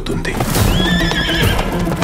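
A horse neighing: one wavering call of about a second, starting about half a second in, over hoofbeats and a low music score.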